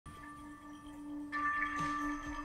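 Quiet opening of a live band's song: a low note held steadily, joined by higher held notes just past halfway, and a first drum hit near the end.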